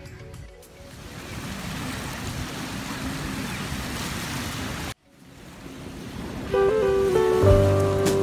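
Small lake waves washing on the shore, a steady rushing that cuts off abruptly about five seconds in and then builds back. Acoustic guitar background music comes in about a second and a half before the end.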